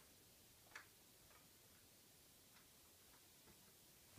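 Near silence: room tone, with one faint tick about three-quarters of a second in and a couple of fainter ticks later.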